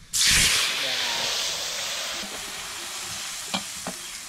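Beaten egg poured into hot oil in an iron wok, sizzling loudly at once and then slowly dying down. Two light clicks near the end.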